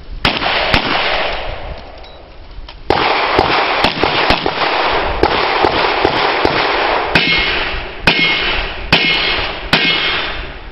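A string of handgun shots, about a dozen at an irregular pace, over a loud steady rushing noise. There is a pause of about two seconds, starting about a second in, before the shots pick up again.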